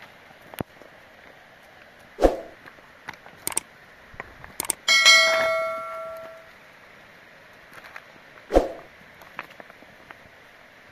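A metal object struck once about five seconds in, clanging and ringing for about a second and a half, among a few scattered clicks and two dull thumps, one about two seconds in and one near the end.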